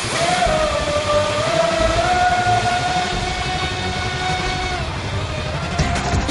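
High-pitched whine of an RC speedboat's Neumotor 1512 brushless motor running flat out, over the hiss of its spray. The pitch rises slightly about two seconds in, holds steady, and fades near the end as the boat runs away.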